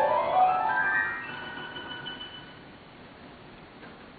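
Piano playing a quick upward run of notes that ends on a high note, which rings on and fades away over the next couple of seconds.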